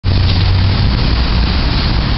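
Steady loud rushing noise with a heavy low rumble: wind buffeting the camera's microphone.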